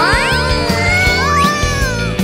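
Cartoon background music with a quick rising whistle-like sound effect at the start and another about a second in, over a high, drawn-out, wavering cartoon-character cry.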